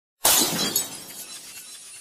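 Glass shattering sound effect: a sudden crash about a quarter second in, fading over the next half second into a faint scatter of falling shards.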